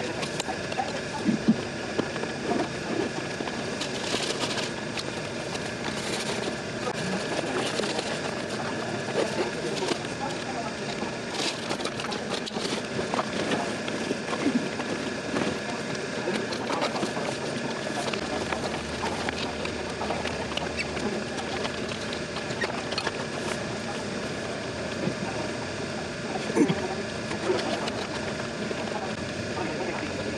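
Indistinct voices of people chatting in the background, with no one voice up close. A faint, steady high-pitched whine runs underneath, and there are a few light clicks.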